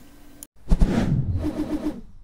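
A title-card sound effect: a loud, noisy swell that starts about half a second in, with a quick pulsing tone near the end.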